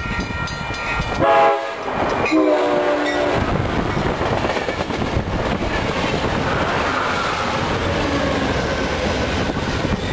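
Amtrak passenger train of bilevel California cars passing close on the near track. Its horn sounds twice near the start, a short blast and then a longer one, followed by a steady, loud rumble and clatter of wheels on rail as the cars go by, with a GE P42 diesel locomotive at the end of the train.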